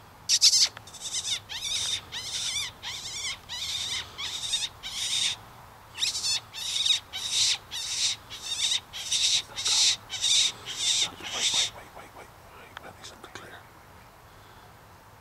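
A fox call, squeaked in a rapid series of short, high squeals, about two a second, with a brief pause about five seconds in and stopping about twelve seconds in. It is calling a fox in to the gun.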